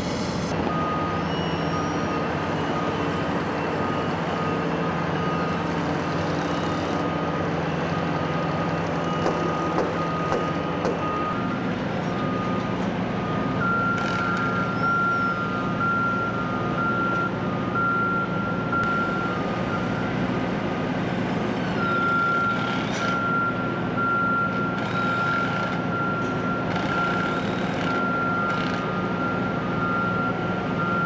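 Heavy construction machinery running steadily while backup alarms beep in regular on-off pulses. A fainter alarm beeps first, then a second, higher and louder alarm joins about halfway in; the engine note shifts a little before it starts.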